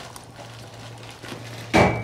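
A fork knocking once against a clear plastic takeaway bowl near the end: a single sharp clack with a brief high ring. Under it runs a faint steady low hum.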